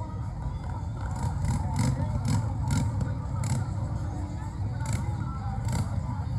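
Motorcycle engines running as parade bikes ride slowly past, mixed with the voices of a crowd of spectators.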